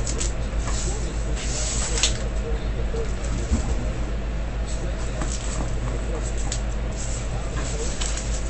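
A cardboard shipping case and foam packing peanuts being handled on a table: scattered rustles and scrapes, the loudest about two seconds in, over a steady low hum.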